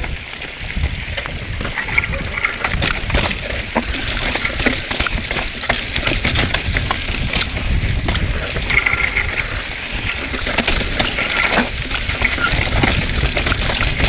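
Mountain bike riding down a dry dirt singletrack: tyres running over dirt and rocks, with a steady stream of short rattles and knocks from the bike over the bumps, and wind rumbling on the camera microphone.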